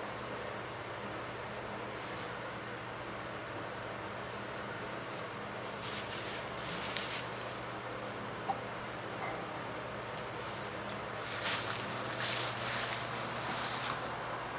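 Straw bedding rustling in a few short bursts, loudest about halfway through and again near the end, as people and donkeys shift in the stall, over a steady low hum.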